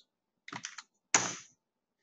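Computer keyboard keys being typed as a number is entered: a quick run of soft keystrokes about half a second in, then one sharper, louder key press just after a second.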